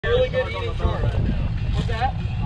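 Indistinct voices for the first second or so, over a steady low rumble from the boat's idling twin outboard motors.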